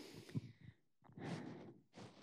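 Faint breaths of a lecturer close to a microphone between sentences: one breath trailing off in the first half second, with a soft click, then another short breath a little past the middle.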